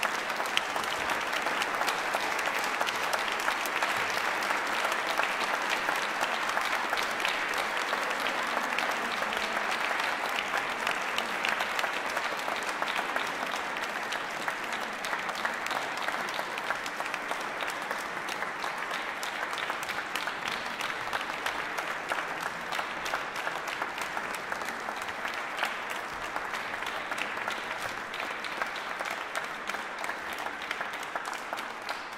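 Audience applauding: dense, steady clapping from a seated hall audience that slowly thins out over the second half.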